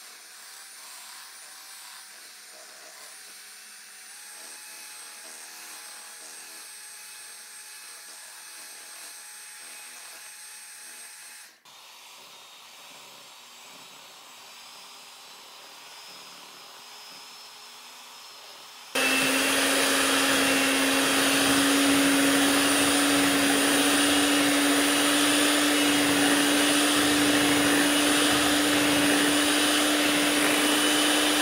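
Electric hand mixer beating cake batter in a glass bowl. It is faint for the first two-thirds, then about two-thirds in it turns suddenly loud: a steady motor whir with a strong steady hum.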